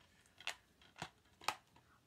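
Three sharp clicks about half a second apart, from a plastic DVD case being handled.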